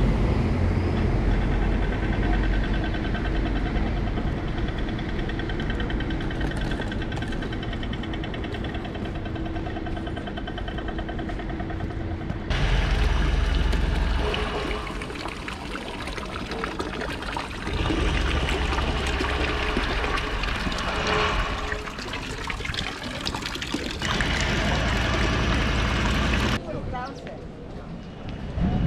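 City street traffic with a truck rumbling past. After a cut about twelve seconds in, water pours from a small fountain spout and splashes into a stone basin.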